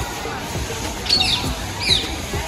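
Two short, high squawks about a second apart, like bird calls, over a steady low background of outdoor ambience.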